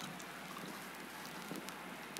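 Faint steady hiss of background noise with a few soft clicks.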